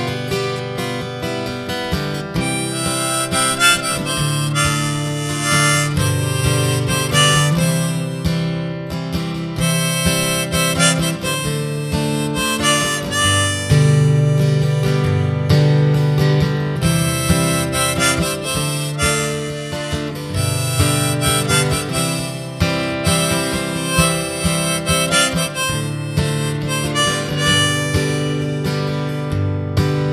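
Harmonica playing the melody over a strummed acoustic guitar: an instrumental break between verses of a folk song.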